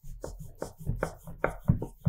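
Wooden rolling pin rolled back and forth over dough on a wooden board, giving a low rumble with repeated knocks, several a second.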